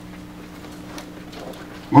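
Room sound with a steady low hum and faint scattered knocks and shuffling as people move about among the chairs. A man's voice over the microphone cuts in right at the end.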